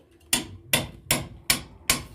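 Hammer striking a long steel chisel held against a brick wall, cutting a chase for concealed wiring: five sharp, evenly spaced blows, about two and a half a second.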